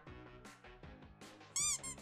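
Quiet background music with a steady beat. Near the end, a short, loud, high-pitched squeak sound effect rises and falls in pitch, followed at once by a shorter second chirp.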